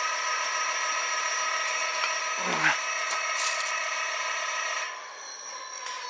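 A planetary-geared e-bike hub motor spins freely on a test stand, giving a steady whine of several tones with a slight grinding that is typical of its internal gears. The whine drops in level about five seconds in.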